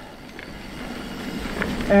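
Mountain bike rolling along a dirt singletrack: a steady low rumble of tyre and riding noise that grows slightly louder, with a couple of faint clicks.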